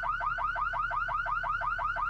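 Car alarm sounding continuously: a rapid warbling tone, each chirp rising and falling in pitch, repeated about ten times a second.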